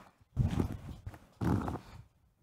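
Microphone handling noise: two short bursts of low rumbling knocks and rustling, about a second apart.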